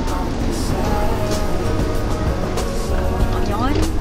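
Steady low rumble of an airport express metro train at the platform as people step aboard, with held musical tones over it and a brief voice near the end.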